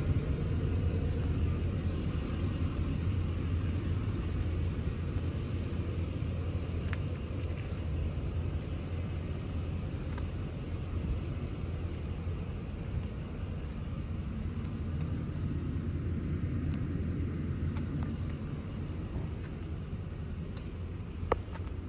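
A steady low rumble with a few faint clicks.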